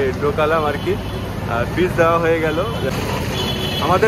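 Voices talking, in several short stretches, over the steady hum of street traffic.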